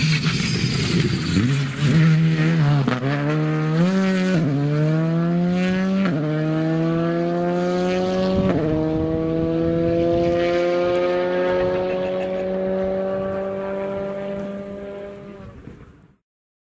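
Rally car engine accelerating hard up through the gears, with four upshifts in the first nine seconds and then one long pull that fades out near the end.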